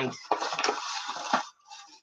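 Brown paper carrier bag rustling and crinkling as it is handled and opened, for about a second, then stopping.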